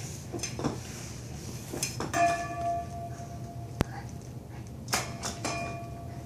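A dog scuffling and pawing at a mattress: a few short scratchy scuffs and a sharp click, with two metallic clinks, one about two seconds in and one near the end, that each ring on for a second or so.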